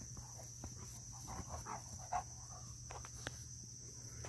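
Steady high-pitched drone of insects in a grass pasture, with soft rustling through the grass and a brief louder knock about two seconds in.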